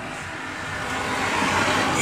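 A road vehicle passing close by: a rushing noise that grows steadily louder.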